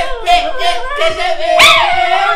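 Drawn-out howling and laughter over background music with a steady beat.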